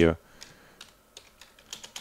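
Computer keyboard typing: a few light key clicks, coming faster near the end.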